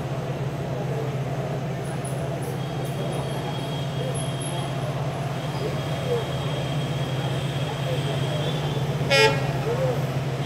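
One short, loud horn toot about nine seconds in, over a steady low drone and faint distant voices.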